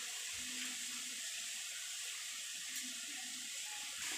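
Faint steady hiss of background noise, with two brief faint low hums, one near half a second in and one near three seconds in.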